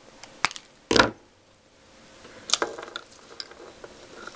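Hands handling paper flowers and card on a craft table: a few sharp clicks, a loud thump about a second in, then a brief burst of crinkly rustling and clicking about two and a half seconds in.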